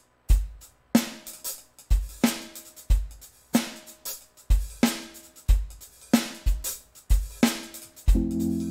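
A Roland TD-25KV electronic drum kit plays a steady beat alone, bass drum alternating with snare and cymbals about every half second, as the opening of a song after the count-in.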